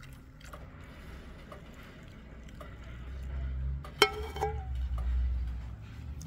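Quiet handling sounds and a low rumble as the pouring of melted paraffin into the tin can ends. About four seconds in there is a sharp metallic clink that rings briefly, followed by a smaller knock, as the metal pot is set down.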